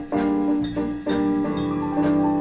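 Jazz ensemble playing: held chords over electric bass, keyboard and drum kit, re-struck in a few sharp accented hits.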